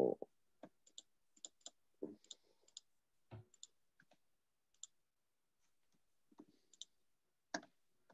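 Faint, irregular computer mouse clicks, about a dozen spread unevenly, most sharp and a few duller.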